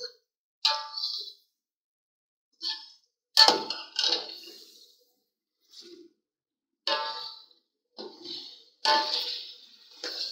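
A metal slotted spoon knocking and scraping against the inside of an aluminium pot while stirring frying chicken. It comes as a string of separate ringing clanks, with short silences between them.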